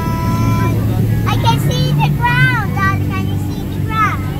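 Steady low hum of an airliner cabin, with a young child's high voice calling out over it in the middle.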